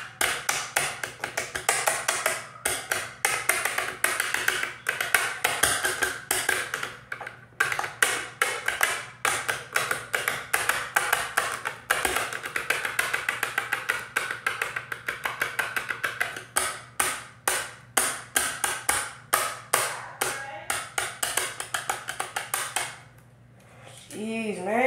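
Rapid, irregular tapping or clicking, several sharp taps a second, that stops about a second before the end.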